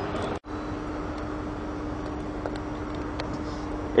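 Steady hum of a car running while stopped, with one low, even tone over a soft background noise. The sound cuts out briefly about half a second in, then carries on unchanged.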